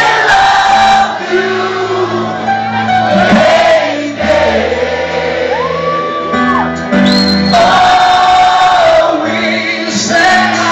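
Live band music: a male lead singer on a microphone over drums and a trombone, with long held notes.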